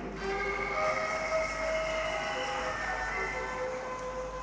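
Soft sustained chords on an electronic keyboard, held notes that shift a few times.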